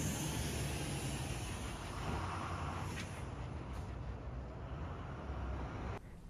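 Steady city street traffic noise: a continuous wash of car and engine sound with no single event standing out.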